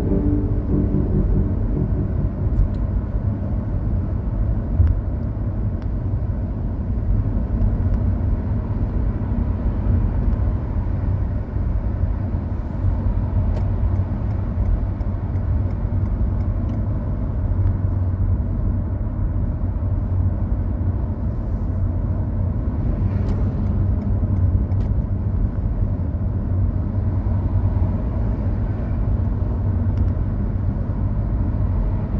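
Steady low rumble of a car driving at speed, tyre and engine noise heard from inside the cabin.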